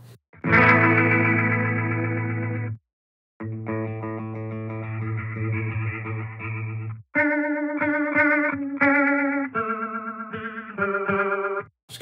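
Electric guitar played through a Line 6 Catalyst 60 combo amp's Rotary (rotating-speaker) effect, giving an organ kind of sound. Two strummed chords are left to ring, each cut off after a few seconds, then a run of shorter chords follows with a pronounced warble.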